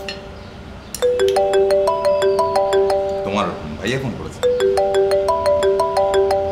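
Mobile phone ringing with a melodic ringtone, a short phrase of bright, plucked-sounding notes repeated twice, after a brief pause at the start. A short vocal sound falls between the two phrases.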